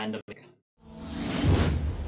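A whoosh sound effect swells up out of a brief silence about a second in, with a deep low rumble under it that carries on after the peak.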